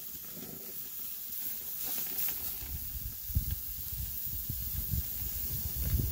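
Bacon-wrapped ground buffalo patties sizzling on the hot grates of a gas grill: a steady hiss, with some low rumbling and a couple of light knocks.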